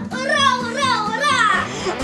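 Children cheering and calling out excitedly over background music.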